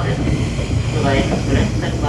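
Tobu 8000-series electric train running at speed, a steady low rumble of wheels and running gear heard from inside the front car. A voice, most likely the onboard announcement, carries on over it.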